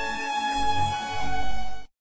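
Background music of long held tones that cuts off suddenly just before the end.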